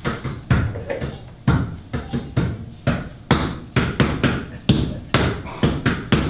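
A railing being beaten by hand in a rough rhythm of about two knocks a second.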